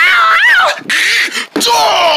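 A person's voice making a long, wavering, animal-like cry, then a breathy hiss about a second in and another cry near the end.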